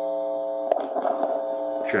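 Small battery-powered Danelectro mini amp turned all the way up with a homemade microphone plugged in, putting out a steady electrical hum made of several steady tones. A sharp click comes about three-quarters of a second in, and a spoken "check" comes through it at the end.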